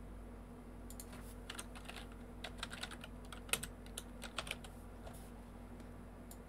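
Typing on a computer keyboard: a quick, irregular run of keystrokes starting about a second in and stopping about five seconds in, over a faint steady hum.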